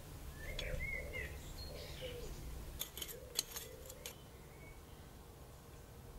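Garden birds chirping in the first two seconds, over a steady low outdoor rumble. About three seconds in comes a quick run of half a dozen sharp clicks.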